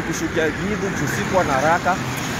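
A voice talking over steady vehicle and road noise of a slowly moving ride, with traffic around.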